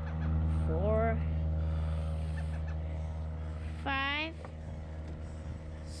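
A child's high voice counting wraps aloud, two drawn-out words about a second and about four seconds in, over a steady low hum.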